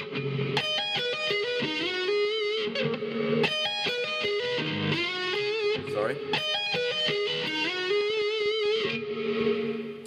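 Distorted electric guitar playing a fast hard-rock arpeggio lick in short phrases, with slides between positions and wide vibrato on the held notes.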